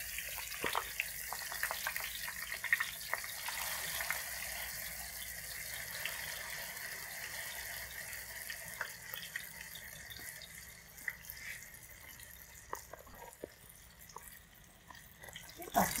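Sheets of tofu skin frying in a pan of oil: a steady sizzle with scattered small pops and crackles, growing somewhat fainter in the second half.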